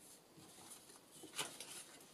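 Faint rustling of paper being handled at a craft table, with one louder short rustle or tap about one and a half seconds in.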